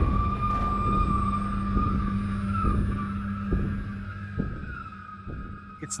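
Eerie horror-film score drone: a low sustained hum under a thin, slightly wavering high tone, with a few soft irregular ticks, fading toward the end.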